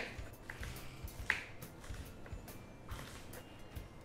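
Kitchen knife striking a wooden cutting board as French beans are sliced: a few faint, sharp clicks at irregular intervals.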